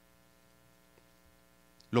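Faint, steady electrical hum made of several even tones, with a man's voice starting just at the end.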